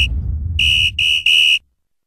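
High-pitched electronic beeps: one beep ending just after the start, then three short beeps in quick succession over a low bass rumble. Everything cuts off suddenly about a second and a half in.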